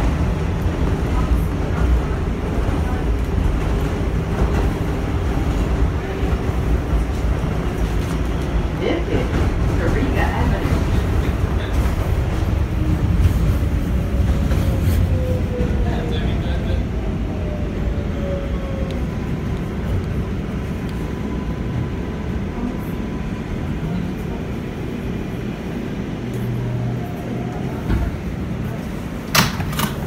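Interior of an R142A New York subway car running on the rails: a steady low rumble of wheels and running gear, with a falling motor whine midway as the train starts to slow. The noise eases as it brakes into a station, and there are a few sharp knocks near the end as it stops and the doors open.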